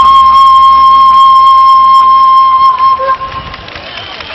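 Thai khlui flute holding one long, steady high note that closes the tune and stops about three seconds in.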